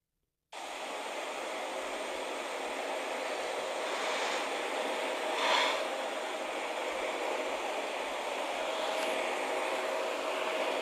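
A steady rushing background noise with a faint hum, cutting in suddenly about half a second in, with one brief louder swell about five and a half seconds in.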